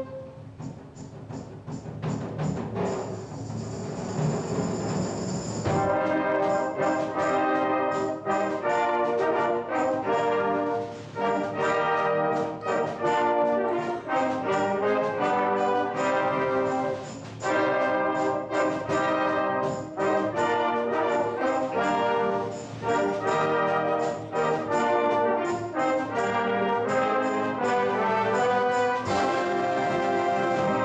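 A concert band of woodwinds and brass, with saxophones, flutes, clarinets and tubas, playing. It opens with a soft passage that swells over the first few seconds. About six seconds in the full band enters loud with short, rhythmic chords and brief breaks between phrases.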